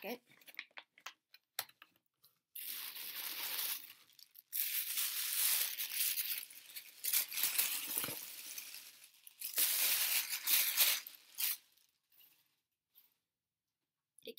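Paper wrapping being crinkled and torn by hand as an individually wrapped item is unwrapped, in three long spells, after a few light taps and clicks.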